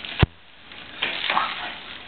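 Bubble wrap popping once with a sharp snap about a quarter second in, followed by soft crinkling of the plastic sheet.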